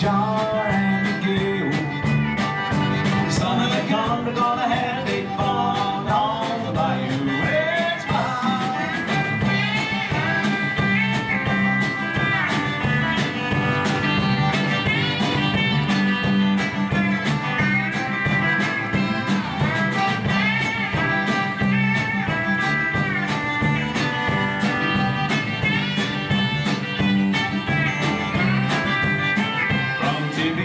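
Live Cajun-country band in an instrumental break: a pedal steel guitar plays the lead with sliding, bending notes over a steady drum beat, bass and strummed guitar.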